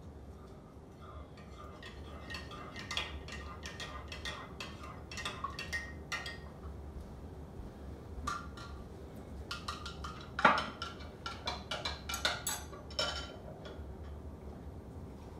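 Metal spoon clinking against the inside of a ceramic mug as a drink is stirred: a run of quick, uneven clinks. About ten and a half seconds in comes one much louder knock.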